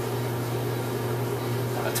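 Steady low machine hum with a background hiss, unchanging throughout.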